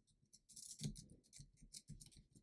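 Faint computer keyboard typing: a short run of separate key clicks.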